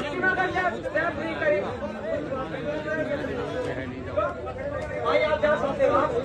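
Crowd of spectators talking, several voices overlapping and calling out, louder near the end.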